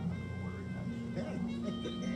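A PA skill machine's game music playing as its bonus-round win total finishes, with short gliding, voice-like sound effects from about a second in.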